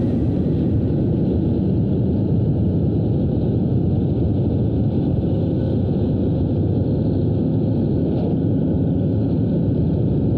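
Yamaha YTX 125 single-cylinder motorcycle riding at a steady cruising speed: the engine's steady low rumble mixed with road and wind noise.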